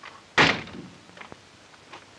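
A wooden apartment door slammed shut once, with a single loud bang about half a second in that dies away quickly.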